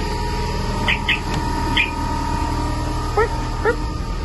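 Steady low rumble with a constant hum from idling diesel truck engines, with four short high chirps about one to two seconds in and two quick rising calls a little after three seconds.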